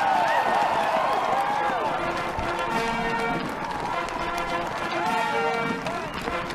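Crowd cheering and calling out right after the oath. About three seconds in, band music starts with held notes under the cheering.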